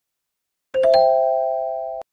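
A three-note rising chime, the notes struck in quick succession and left ringing together as they fade, then cut off suddenly.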